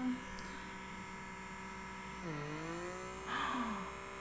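Handheld electric blackhead vacuum running steadily on its medium suction setting, its small motor giving a constant buzz.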